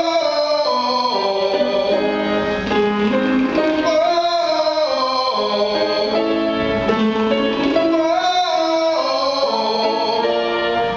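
A tenor sings vocalise exercises on a rapid tongue trill to piano accompaniment. The pitch steps up and back down in repeated scale runs of about two seconds each, and each run starts a step higher.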